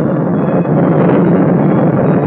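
Steady, even jet-engine noise of an aircraft in flight, a dense rushing sound with no breaks.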